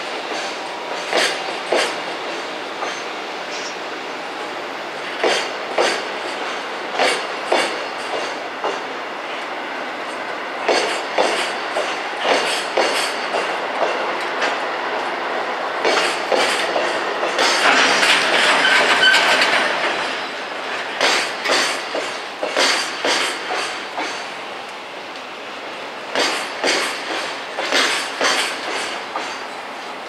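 Container freight wagons rolling past, their wheels clacking over rail joints in clusters of knocks that come every second or so. About eighteen seconds in, a high metallic squeal rises over the clacking for about two seconds.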